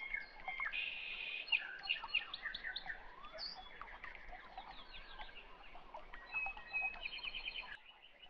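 Birds chirping and calling in the background: a mix of short whistles, chirps and quick trills, with a rapid trill near the end before it stops abruptly.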